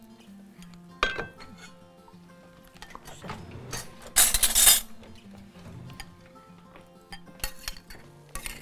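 Tableware clinking and scraping: a metal spoon against a porcelain soup bowl and a utensil on a serving plate, with a sharp click about a second in, a louder, harsher scrape of about half a second just after four seconds, and a few more clicks near the end. Quiet background music runs underneath.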